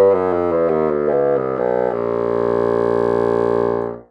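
A 1968 Fox 201 bassoon playing a descending scale of short notes that steps down into a long-held low note, which cuts off abruptly at the end. It is recorded through a Rode MicMe microphone plugged into a Samsung Galaxy S10 phone.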